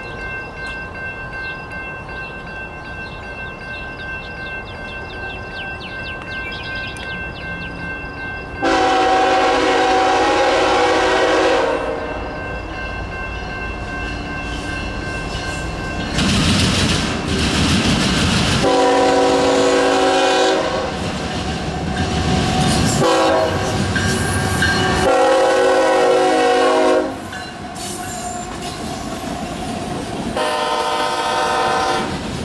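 Air horn of CSX GE freight locomotives sounding as the train approaches: one long blast about nine seconds in, then four more blasts in the second half. Beneath the horn, the rumble of the oncoming train grows.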